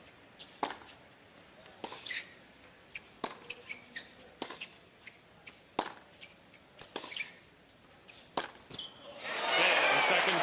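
Tennis rally on a hard court: sharp racquet strikes on the ball about every second and a quarter, with ball bounces between them. Near the end, crowd applause and cheering swell up as the point, and with it the set, is won.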